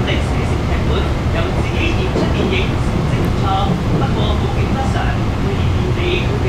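MTR Kinki Sharyo–Kawasaki electric train heard from inside the carriage while running through an underground tunnel: a loud, steady low rumble of the running train, with passengers' voices over it.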